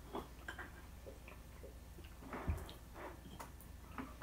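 Faint chewing and mouth sounds of someone eating cheesecake, with scattered small clicks and a soft thump about two and a half seconds in.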